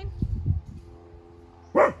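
A corgi barks once, short and loud, near the end. Before it comes a brief low, muffled rumble in the first half second.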